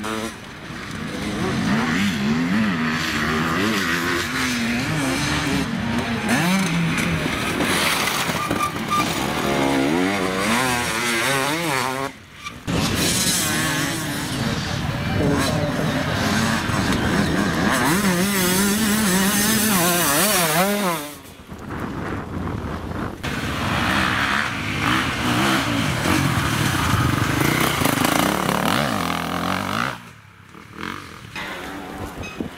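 Enduro dirt bike engines revving hard, the pitch rising and falling with the throttle as the bikes climb rough rocky trail. The sound drops out briefly twice, about twelve and twenty-one seconds in.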